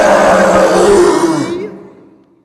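A man's voice letting out one long, loud ogre roar, rough and held on a steady pitch, dying away about a second and a half in.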